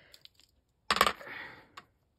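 Large bubblegum beads clicking together in the hand: a few faint ticks, then a quick cluster of sharp clicks about a second in, a short rattle, and one more click.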